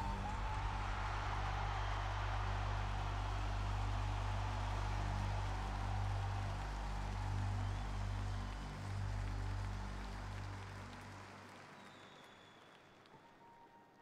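Sustained low music chords with crowd cheering and applause over them. Both fade away over the last few seconds to near silence.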